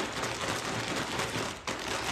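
A zip-top plastic bag full of food being shaken and squeezed by hand to mix its contents: a continuous crinkling rustle of the plastic, with a brief drop about one and a half seconds in.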